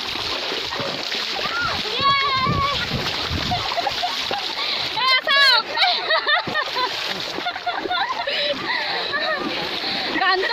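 Splashing and sloshing in shallow muddy floodwater as a person is dragged through it, with excited high-pitched voices calling out over it, loudest about five to six seconds in.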